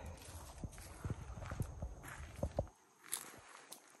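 Footsteps of a person walking over grass and garden ground, soft steps about two a second. A low rumble on the microphone drops out about three-quarters of the way through.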